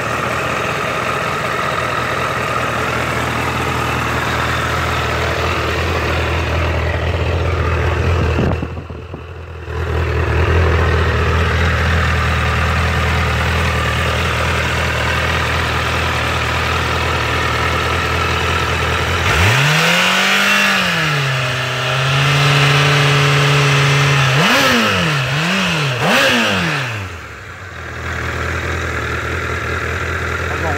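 2010 Honda CBR1000RR inline-four engine idling steadily, then revved about two-thirds of the way in: the pitch rises and falls, holds at a raised speed for a couple of seconds, then two quick throttle blips before it drops back to idle near the end.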